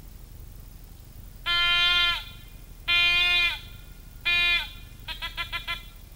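Hunting horn blown in three long, steady blasts, each sagging a little in pitch as it ends, followed near the end by a quick run of about six short toots.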